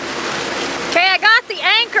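Steady rush of wind and water from a pontoon boat under way, with talking starting about halfway through and louder than the rush.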